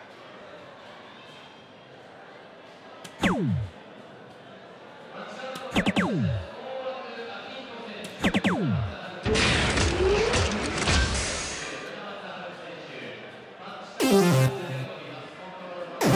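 DARTSLIVE electronic soft-tip dartboard sound effects. Three quick falling electronic tones, about three, six and eight seconds in, mark darts registering on the board. A louder effect of about three seconds follows, then a fluttering electronic burst near the end.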